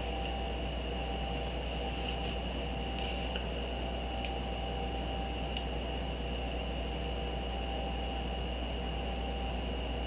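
Steady low electrical hum and hiss of the recording's background noise, with a thin, steady high-pitched whine and a few faint ticks.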